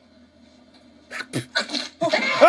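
A near-silent pause, then a few short breathy bursts of a person's voice about a second in.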